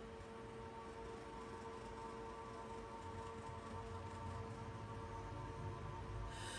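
Quiet room with a faint, steady hum at one pitch.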